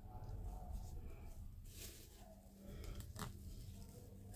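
Faint rustling and crinkling of plastic cling film being stretched and wrapped over the head, with a few soft crackles.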